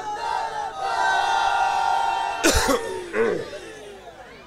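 A man's voice holding a long, drawn-out wailing note in mourning lament, cut off about two and a half seconds in by a loud cough, with a smaller one just after.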